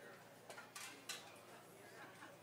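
Near silence broken by a few faint, sharp clinks about half a second to a second in.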